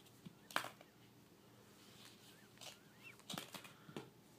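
Hollow plastic ball-pit balls clicking and knocking together as a baby handles them: a few light taps, the sharpest about half a second in and a quick cluster near the end.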